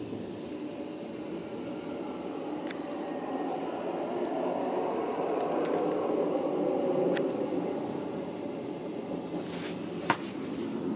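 Passenger train in motion, heard from inside the carriage: a steady running rumble of wheels on rails that swells in the middle and eases off again, with a few faint clicks.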